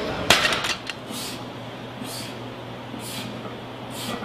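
A sharp metallic clatter of gym weights, several quick knocks just after the start, then short hissing sounds about once a second over a steady low hum.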